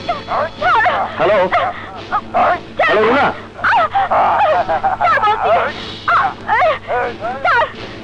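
A man's voice, animated and swooping sharply up and down in pitch, in quick bursts with short breaks.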